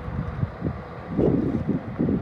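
Wind buffeting the microphone in gusts, strongest a little past the middle, over the low steady running of the Scania V8 crane truck.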